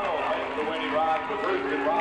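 A voice with long held, pitched notes, as in singing, over a steady background.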